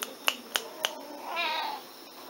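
Four quick light pats about a quarter-second apart, then a domestic tabby cat gives one short meow a little past halfway.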